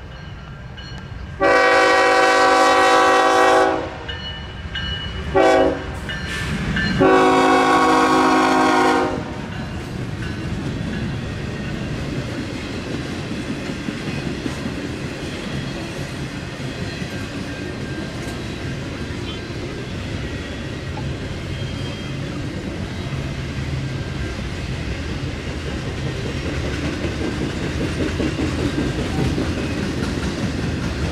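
Illinois Central diesel locomotive's multi-chime air horn sounding for a grade crossing: a long blast, a short one, then another long blast. After that the double-stack intermodal train rolls past with a steady rumble and wheel clatter on the rails, growing a little louder near the end.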